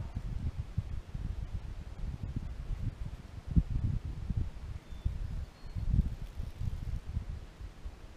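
Wind buffeting the microphone in gusts: an uneven low rumble that swells twice and dies away at the end.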